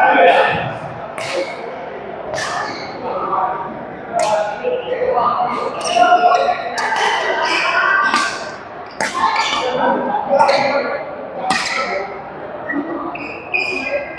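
Doubles badminton rally: sharp racket strikes on the shuttlecock, roughly one a second, echoing in a large hall, with players' voices in between.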